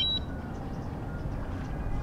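A short rising electronic beep right at the start, the DJI Mavic Mini remote controller chiming as it powers up, then a steady low outdoor rumble.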